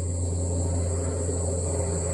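Outdoor ambience by a reed bed: a steady low rumble with a faint, continuous, high-pitched chirring of insects.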